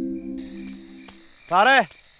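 Crickets chirping with a steady high trill as soft background music dies away just after the start. About one and a half seconds in, a brief loud voice cuts in.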